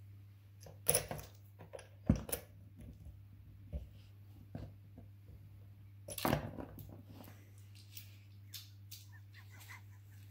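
Saw chain clinking and rattling as it is worked by hand round the drive sprocket and onto the bar of a Stihl MS660 chainsaw. Irregular metallic clicks and short clatters, loudest about a second in, just after two seconds and around six seconds, over a steady low hum.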